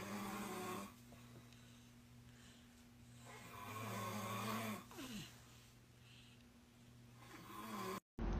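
A man snoring in his sleep: slow snores a few seconds apart, one fading just under a second in, a longer one mid-way, and another building near the end.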